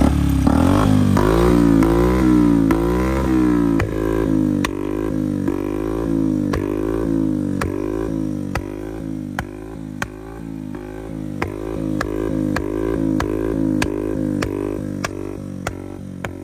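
Single-cylinder engine of a Bajaj Platina 100 cc motorcycle with an aftermarket SC Project-style silencer, its throttle blipped over and over so the revs rise and fall about three times every two seconds. Sharp pops (backfire crackers) come from the exhaust roughly once per blip.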